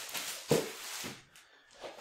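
Golf irons in plastic sleeves being handled and set aside: one light knock about half a second in, with faint handling noise that fades to near silence.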